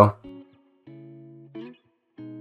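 Quiet background music: a held guitar chord about a second in.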